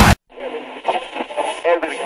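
Heavy metal music cuts off sharply just after the start, and a thin, band-limited voice follows, sounding as if played through a radio or old TV speaker. A faint high steady tone sits over the voice.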